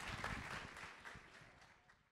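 Audience applause, faint and fading out about one and a half seconds in.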